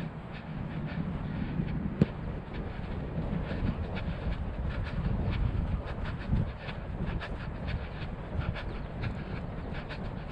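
Uneven low rumble of wind buffeting the camera's microphone, with faint rustles and clicks of handling, and one sharp click about two seconds in.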